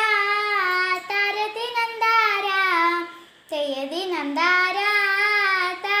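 A single voice singing a Malayalam folk song about farming (krishi pattu, nadan pattu), unaccompanied, in long drawn-out phrases with a short breath pause about three and a half seconds in.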